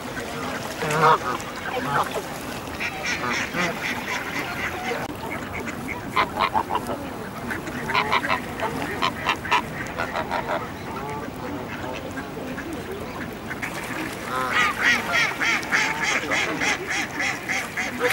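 A flock of mallard ducks and Canada geese quacking and honking while crowding to be fed, the calls coming in bursts of rapid repeated notes, densest near the end.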